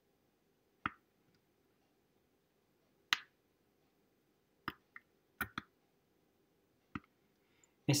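Buttons of a Casambi Xpress wireless push-button switch being pressed: about seven short plastic clicks at irregular intervals, some in close pairs. A man starts speaking at the very end.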